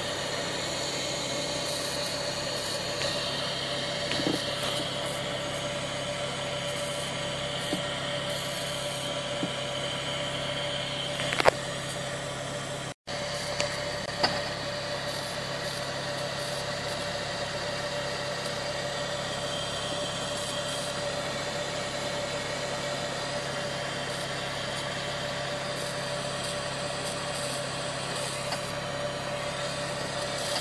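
The Volvo V70's electric fuel pump assembly running with a steady hum and a constant whine, the car's idle underneath it. While it runs, fuel leaks from a crack in the pump assembly's plastic top. One brief knock comes about 11.5 s in.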